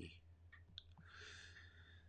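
Near silence: a few faint clicks in the first second, then a soft breath.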